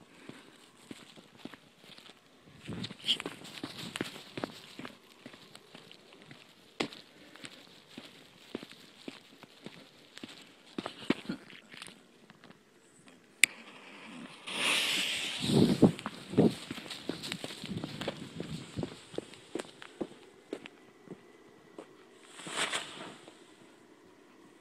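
Fireworks going off: scattered pops and crackles throughout, then a sharp crack, a hissing burst lasting about a second and a half, and two low bangs just after, about halfway through. A shorter hiss comes near the end.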